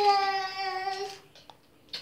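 A small child's voice holding one long, high sung note for about a second, the pitch sliding slightly down before it stops.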